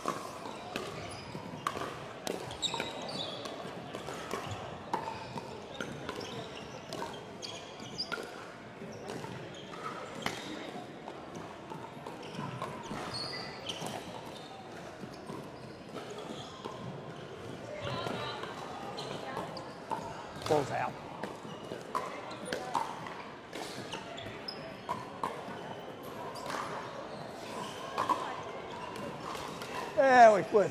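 Pickleball paddles striking a hollow plastic ball, sharp pops at irregular intervals, echoing in a large hall, over a steady murmur of background voices. A couple of short squeaks come about two-thirds of the way in.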